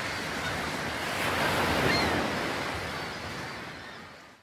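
Sea surf washing, swelling about two seconds in and then fading out.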